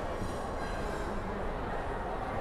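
Balls rolling along the metal tracks of a large kinetic rolling-ball sculpture: a steady rolling rumble, with faint high ringing tones during the first second.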